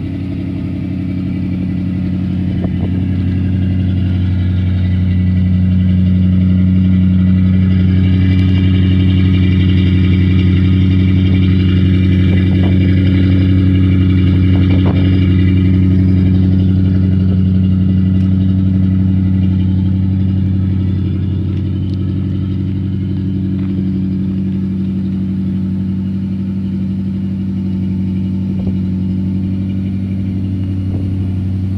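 The 1962 Mercury Monterey's 352 FE V8 idling steadily at an even pitch, louder through a stretch in the middle.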